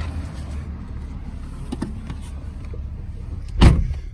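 A 2013 Chevrolet Impala's door shutting with one heavy thud about three and a half seconds in, after a few light clicks and rustles of someone getting into the driver's seat over a steady low rumble. The outside noise drops once the door is closed.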